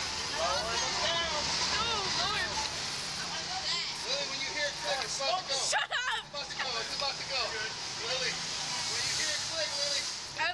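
Indistinct voices talking, with a burst of laughter about six seconds in.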